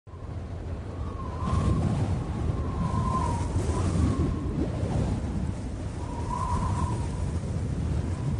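Ambient sound bed for an animated intro: a low, noisy rumble with a faint wavering high tone that swells several times.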